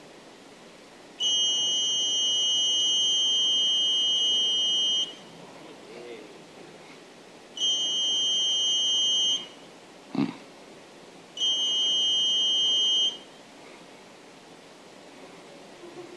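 Small electronic buzzer on an IoT board sounding a steady high-pitched tone three times: first for about four seconds, then twice more for under two seconds each. It is switched on by an open-hand gesture and off by a closed hand, through a camera and MQTT.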